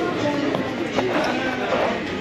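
Indistinct chatter of several passengers talking at once, with music underneath.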